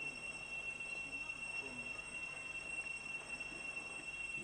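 Cicadas droning: one steady, high-pitched buzz that holds the same pitch without pause, with faint voices in the background.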